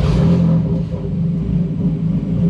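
Race car engine idling just after starting, with a steady low rumble that eases slightly in level within the first second.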